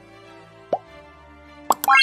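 Subscribe-button animation sound effects over a soft music bed: a short pop about three-quarters of a second in, then two clicks and a quick rising run of chime notes near the end.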